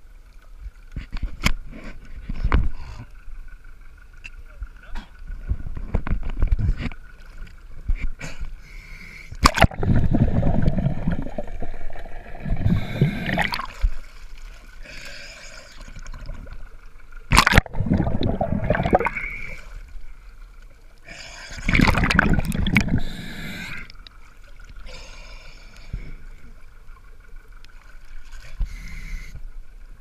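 Sea water sloshing and splashing around a camera held right at the surface as a swimmer moves through it, in several loud, uneven bursts.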